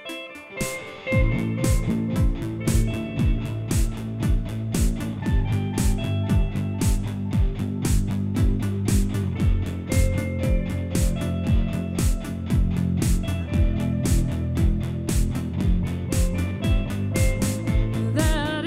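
Live band starting a song: guitar notes alone at first, then about a second in the drums and bass come in with a steady beat, about two kick-drum strokes a second under the guitar, and the band plays on at a steady level.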